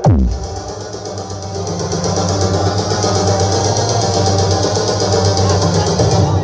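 Loud electronic dance music through a tall stack of mobile-disco speaker cabinets, kicking in abruptly with a falling bass sweep and then running on with a heavy, steady bass line.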